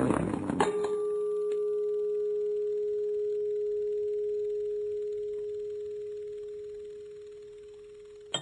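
A single pure, steady tone from the dance piece's soundtrack, held for about seven seconds and slowly fading, after a few sharp hits in the first half-second.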